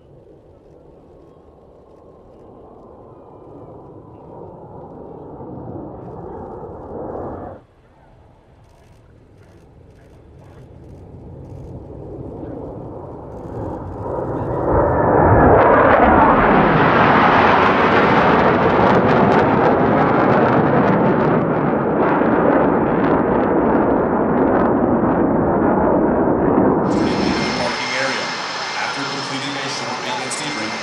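Jet engine noise from the Blue Angels' F/A-18 Super Hornets. It rises as the formation approaches and is broken off by an edit, then builds again to a loud, sustained roar as the six-jet formation passes overhead. Near the end it changes abruptly to a higher, hissing whine from the jets taxiing on the ground.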